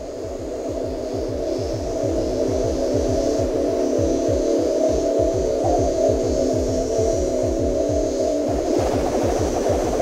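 Computer-generated sonification of a molecular dynamics simulation of an alanine molecule. It is a dense, steady hum of many held tones over a rapid low pulsing, fading in over the first couple of seconds and turning rougher near the end.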